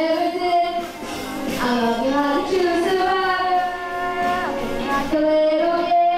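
A boy singing solo into a handheld microphone, holding long notes and sliding between pitches, with a quick downward slide about four and a half seconds in.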